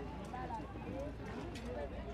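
Outdoor city ambience: indistinct distant voices over a steady low rumble, with a few scattered clicks.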